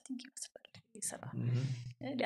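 Quiet, breathy conversational speech: a softly spoken word, then a low hummed voice through the second half.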